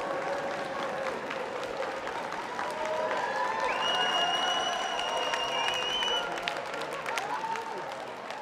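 Audience applauding, with crowd voices underneath. A high steady tone rises over the clapping for about two and a half seconds near the middle.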